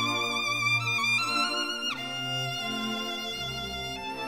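Background music: a violin melody played with vibrato over sustained low notes, stepping upward and then sliding down about two seconds in.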